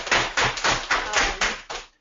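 Audience applause, quick dense clapping that dies away near the end.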